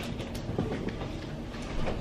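Low rustling with a few faint knocks as people move about and handle shoes.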